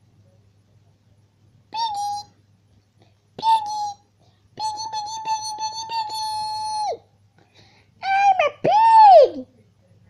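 A child's high-pitched vocal squeaks: five squeals, one held steady for about two seconds and the last rising and falling in pitch.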